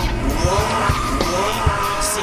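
Car engines revving hard, pitch rising and falling over several gear changes, with tyres squealing, over music with a steady beat.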